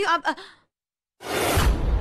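Dramatic whoosh sound effect from a TV serial soundtrack: after a short dead silence it starts suddenly about a second in, a loud hissing rush over a deep rumble, just after a woman finishes a line of dialogue.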